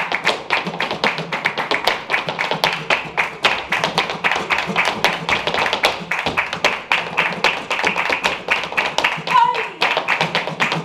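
Flamenco zapateado: a dancer's heeled shoes striking the stage floor in fast, dense rhythm, mixed with palmas hand-clapping from the accompanists. A brief vocal call comes near the end.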